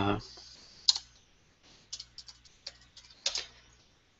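Typing on a computer keyboard: a short run of irregular keystrokes. There is a sharp key press about a second in, a quick cluster of lighter ones around two seconds, and a heavier press just after three seconds.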